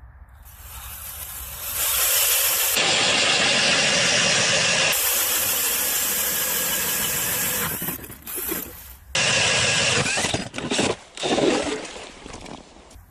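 A DeWalt DCD999 cordless drill at full speed turning a Strikemaster Mora hand auger through lake ice: the auger cuts in with a loud steady noise that builds over the first two seconds, holds for about six seconds, and stops about eight seconds in. A few shorter loud bursts follow.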